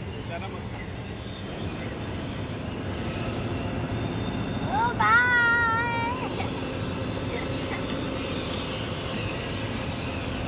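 Crane's diesel engine and hydraulics running steadily, heard from inside the operator's cab while the boom is worked with the joysticks, growing slightly louder over the first few seconds. About five seconds in, a child's high voice calls out briefly, for about a second.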